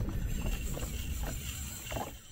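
Wind buffeting the microphone and water washing around a jet ski on open sea: a steady low rumble under a light hiss.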